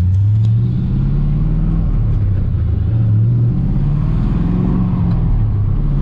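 Swapped-in LS1 V8 engine of a Mazda RX-7, heard from inside the cabin and loud, pulling the car along. Its note climbs in pitch, dips and climbs again a couple of times, over a steady road rumble.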